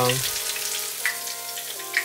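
Hot oil sizzling in a deep-fry pot around a breaded pork cutlet (tonkatsu) as it is turned and lifted out with chopsticks, with a couple of sharper crackles. Soft background music plays under it.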